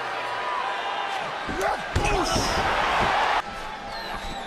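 Wrestling arena audio: shouting voices over crowd noise, with a sharp thud of a body hitting the ring mat about two seconds in, just after a smaller knock. The sound drops suddenly a little before the end.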